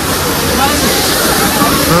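Steady, loud rush of a waterfall and fast shallow water running over a concrete channel.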